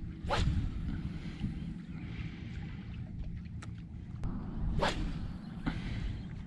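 Two quick whooshes about four seconds apart, over a steady low rumble like wind buffeting the microphone.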